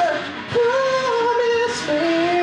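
Electric guitar lead line of long held notes with a slight waver, the second note coming in about half a second in and held almost to the end.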